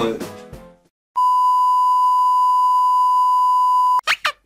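A steady, high-pitched electronic beep, one pure held tone like a censor bleep or test tone, starts about a second in and lasts about three seconds before cutting off abruptly. Before it, background music fades out.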